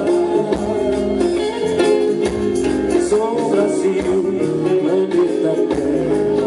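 Live band playing a song, amplified through the stage PA: electric and acoustic guitars over a drum kit and hand percussion.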